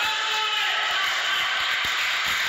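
Steady din of voices and movement echoing through an indoor sports hall, with a brief pitched call in the first half-second and a soft low thud shortly before the end.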